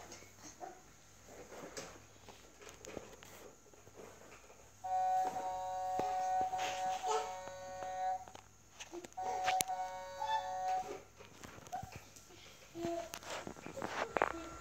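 An electronic toy plays a tune of steady, held beeping tones that switch on suddenly about five seconds in, run for about three seconds, break off, and play again for about two seconds.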